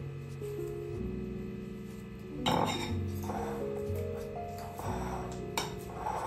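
Background music, with two clinks of a spoon against a bowl, about two and a half seconds in and again near the end, as a banana is mashed.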